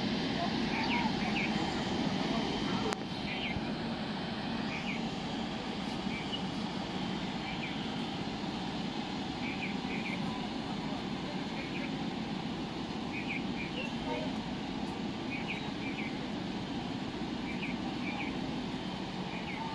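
Steady, distant running of a taxiing jet airliner's engines, mixed with the murmur of onlookers' voices and a few short high chirps.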